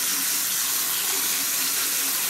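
Water running steadily from a bathroom sink tap.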